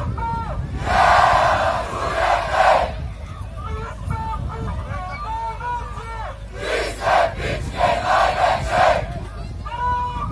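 Large crowd of Red Star Belgrade football supporters chanting in unison from the stands. There are two louder surges of massed shouting, about a second in and again from about six and a half seconds in.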